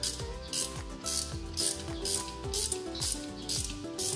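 Ratchet wrench clicking in repeated short strokes, about two a second, while working the spark plug out of a Kawasaki Barako 175 motorcycle engine's cylinder head.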